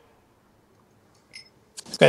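Near silence on a call line, broken by one short, faint click about one and a half seconds in.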